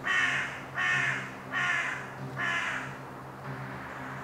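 Four loud, harsh animal calls, evenly spaced about once a second, over a low steady drone.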